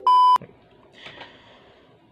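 A short, loud, steady electronic test-tone beep, the kind that goes with TV colour bars, lasting about a third of a second.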